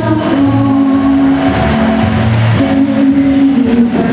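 Girl's solo singing through a microphone and PA, holding long notes of about a second each over a musical accompaniment.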